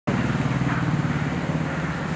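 Auto-rickshaw engine idling steadily.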